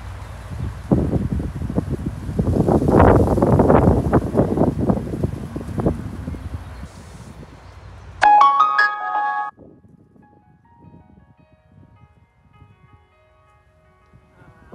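Loud, rough rumbling noise on a phone microphone for several seconds. About eight seconds in, a short electronic melody of piano-like notes starts abruptly, loud at first and then continuing more quietly.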